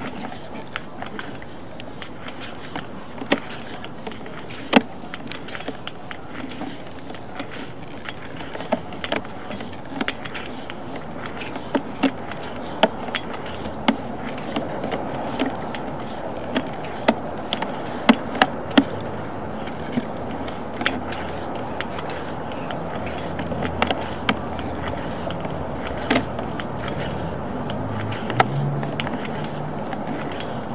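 Sewer inspection camera's push-rod cable being pulled back out of the line: a steady rustling run with irregular sharp clicks and knocks, getting a little louder in the second half.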